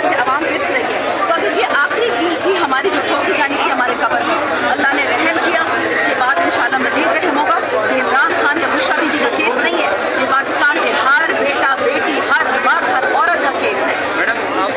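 A woman speaking close to a handheld microphone over the chatter of a crowd pressing around her.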